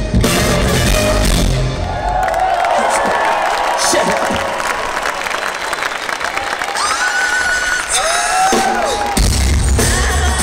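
Live funk band playing, then dropping to a breakdown: after about a second and a half the bass and drums cut out, leaving crowd noise and a voice over the PA, and the full band comes crashing back in near the end.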